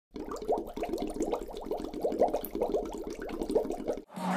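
Air bubbles rising underwater: a quick, steady string of short rising blips.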